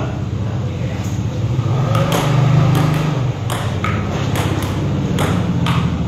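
Table tennis ball clicking back and forth between paddles and table in a rally: about eight sharp clicks roughly half a second apart, starting about two seconds in, over a steady low hum.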